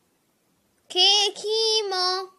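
A child's voice chanting a letter and word of the Sindhi alphabet ("khe, khemo") in a sing-song recitation, starting about a second in after a silence.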